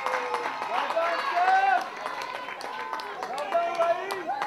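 Several voices shouting and calling out across the field, footballers and onlookers, with no clear words.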